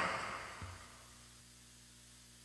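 A man's announcing voice dies away in its echo over the first second, leaving near silence.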